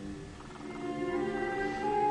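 Slow background score of held low chords, with higher sustained notes coming in and swelling from about halfway through.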